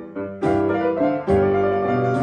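A MIDI-driven 1915 pianola (player grand piano) playing a chanson melody with chords, backed by computer-generated bass and drums. Two drum hits land about half a second in and just after a second.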